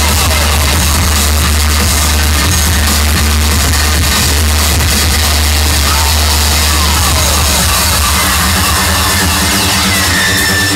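Loud trance music played live by a DJ over a club sound system, heard from the dance floor, with a heavy bass line that turns choppy for a few seconds and sweeping synth glides in the second half.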